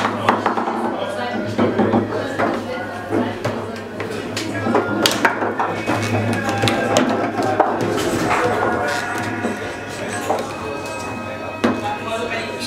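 Table football game in play: irregular sharp clacks of the ball being struck by the player figures and hitting the table, with music playing in the background.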